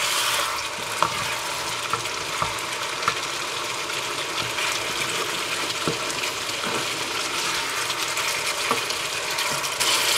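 Hassar fish and eddoes in curry sauce sizzling steadily in a frying pan while a wooden spoon stirs and turns them, with a few light clicks of the spoon against the pan.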